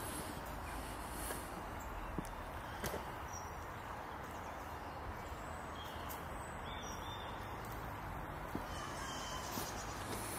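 Steady outdoor background noise with faint bird chirps here and there and a few soft clicks.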